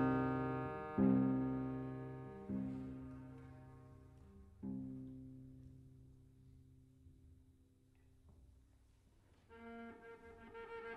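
Solo cello, prepared with sticky tack to alter its tuning toward an oud-like sound, sounding a few low notes about a second or two apart. Each note starts sharply, then rings and fades, until the sound dies almost away; a new, higher note comes in near the end.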